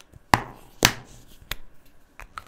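Three sharp plastic clicks, a little over half a second apart, from felt-tip markers being handled and picked up on a tabletop.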